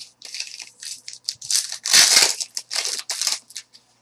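Plastic-foil wrapper of a trading card pack being torn open and crinkled by hand: a run of rustling, crackling bursts, loudest about two seconds in.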